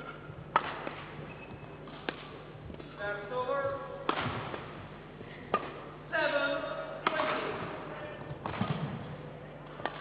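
Badminton rackets striking a shuttlecock in a rally, a sharp crack about every one and a half seconds, with squeaks of shoes on the court mat between strokes.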